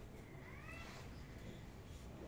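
Quiet room tone with one faint, short high call about half a second in that rises and then falls in pitch.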